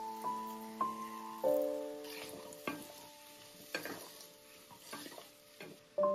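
Chunks of raw pumpkin tipped into a pot of onion and carrot frying in butter, landing with a few irregular soft knocks over a faint sizzle. Soft piano music plays over the first second or so, then fades.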